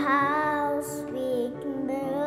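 A child singing a slow song over sustained electronic keyboard chords, holding long notes.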